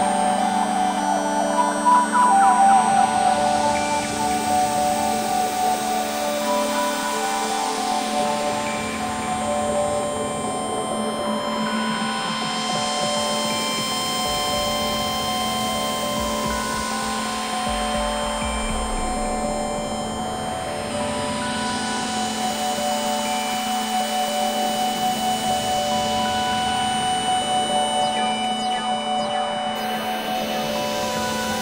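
Ambient electronic synthesizer music: held pad tones over a steady low drone, with a hiss that sweeps slowly down and back up in pitch a few times.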